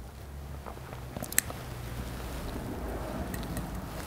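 A man drinking from a wine glass: faint sips and swallows over a steady low hum, with one small sharp click a little over a second in.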